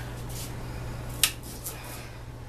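Kitchen knife cutting a lemon in half on a cutting board, with one sharp tap a little after a second in as the blade meets the board and a couple of fainter taps after it. A steady low hum lies underneath.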